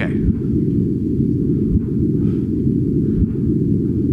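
LIGO gravitational-wave signal GW150914, turned into audio and played through a loudspeaker: a steady low rumbling noise with three brief thumps about a second and a half apart. Each thump is the chirp of two black holes colliding, the ripple in space-time recorded by the detector.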